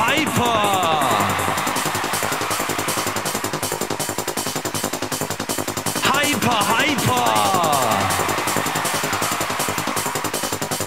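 1990s rave/hardcore techno track with a fast, driving electronic beat. A gliding, swooping sound sweeps through near the start and again about six seconds in.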